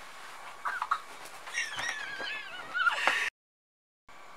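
A woman's high-pitched, wavering squeals of excitement, muffled by a towel held to her face: a few short squeaks about a second in, then a longer squeal. The sound cuts off abruptly a little over three seconds in.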